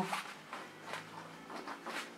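Faint handling sounds of an infant car seat's harness: a few soft clicks and rustles as the strap release button is pressed and the straps are worked.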